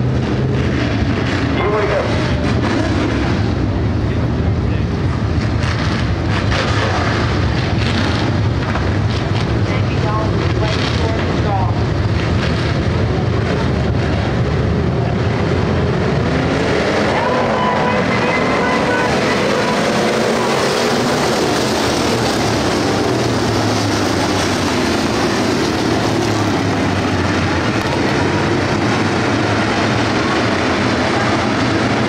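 A field of about 25 dirt-track race cars running together in a pack, making a loud, continuous engine drone. In the second half many engine notes rise and fall over one another as the cars get on the throttle.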